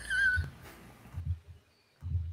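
A short, high-pitched, wavering laughing squeal from a person, followed about a second in by a few faint low thumps.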